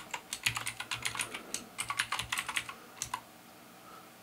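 Typing on a computer keyboard: a fast, uneven run of key clicks that stops about three seconds in.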